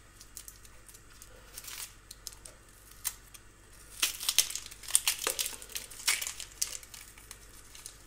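Dry, papery skin of a red onion crackling and tearing as it is peeled off by hand. There are a few scattered crackles at first, then a denser run of crackling in the second half.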